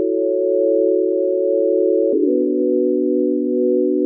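Chill house intro: a held synthesizer chord of soft, pure tones with no beat, changing to a new chord with a lower bottom note about two seconds in, the notes sliding briefly into place.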